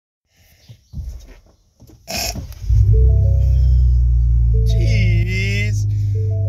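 2022 Ford Bronco engine started: after a few clicks, a short crank about two seconds in, and the engine catches into a steady low idle that settles slightly lower about five seconds in. Over the idle, the dashboard's electronic startup chime plays a few held tones.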